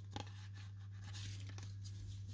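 Faint rustle of baseball cards being handled as the top card is slid off a stack and moved to the back, with a couple of small clicks just after the start, over a steady low hum.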